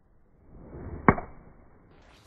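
Golf club swishing through the downswing, a rush of air that builds for about half a second, then striking the ball with one sharp click about a second in.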